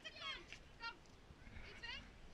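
Children's high-pitched voices: a few short, faint squealing calls with wavering pitch.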